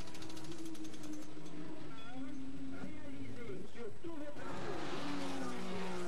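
Porsche racing car engines running at speed on the track with a steady drone. The pitch steps lower twice, and the sound grows louder and rougher after about four and a half seconds.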